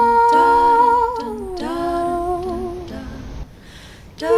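Soundtrack of a woman humming a slow wordless melody: a long held note that slides down about a second and a half in to a lower held note, which fades away near the end.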